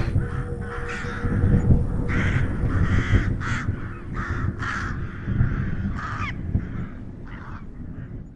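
Crow cawing, a series of about a dozen harsh caws at irregular intervals over a low rumble, growing fainter near the end.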